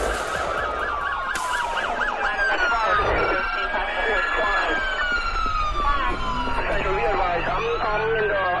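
Emergency vehicle sirens, more than one sounding at once: a fast warbling yelp near the start, then long wails that slide slowly down in pitch.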